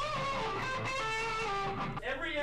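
Electric guitar played through a Line 6 Powercab speaker cabinet: a slow lead line of held single notes, each sustained a few tenths of a second before moving to the next pitch.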